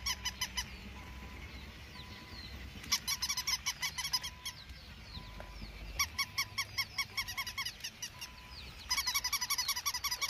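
Waterfowl calling in rapid runs of honks, about eight calls a second, in four bursts of one to two seconds each. Faint higher bird chirps come between the bursts.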